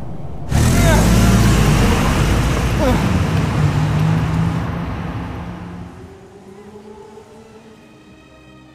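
A car's engine and road rumble, starting abruptly about half a second in and fading away over the next five seconds.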